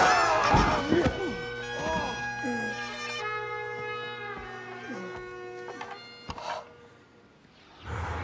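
A set of bagpipes, just pulled free, sounding a steady drone with several higher notes held over it. The pipes die away after about five seconds as the bag empties.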